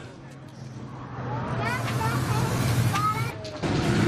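Voices calling over a steady low hum and noise, which grows louder about one and a half seconds in and cuts off just before the end.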